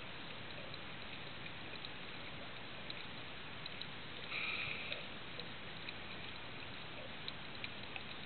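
Steady underwater hiss with scattered faint clicks, and a brief louder rush of noise about four and a half seconds in.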